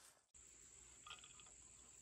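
Near silence broken by a brief dropout, then faint, steady, high-pitched insect chirring in woodland.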